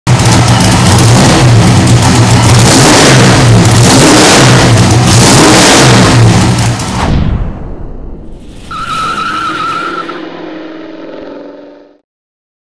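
Naturally aspirated, carbureted 665 cubic inch big-block V8 stroker running hard on an engine dyno, very loud, its pitch wavering with the revs. About seven seconds in it drops off sharply. A much quieter sound with a wavering high whine follows until the end.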